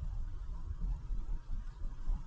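Truck driving along a paved road: a low, uneven rumble of engine, tyres and wind with a steady hiss above it.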